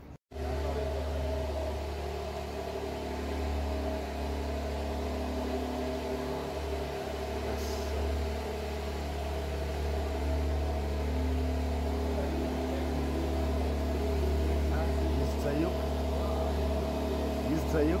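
A steady low mechanical hum with several held tones above it, like a car engine idling in an enclosed garage, with faint voices in the background.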